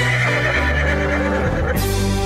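A horse whinny sound effect over background music: one long, high cry that trails off with a warble near the end, over a steady bass line.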